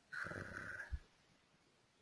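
A person's short noisy breath, lasting about a second and ending in a dull low bump.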